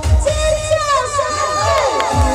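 Dance-pop track whose kick-drum beat drops out for a moment, the gap filled with high, sliding shouts and cheers from several voices; the beat comes back right at the end.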